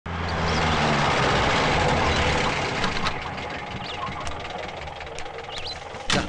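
Hindustan Ambassador car driving up a dirt track and pulling to a stop, its engine loud over the first couple of seconds, then settling to a quieter idle. Birds chirp faintly in the background.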